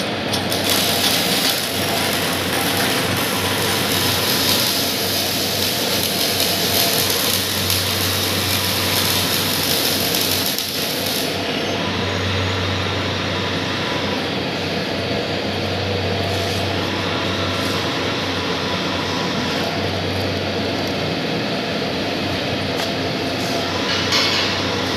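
Pulverizer grinding machine running steadily: a continuous mechanical drone with a low hum under it. A high hiss on top drops away abruptly about eleven seconds in.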